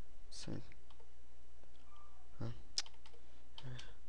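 Computer keyboard being typed on: a handful of separate keystrokes with gaps between them, over a steady low hum.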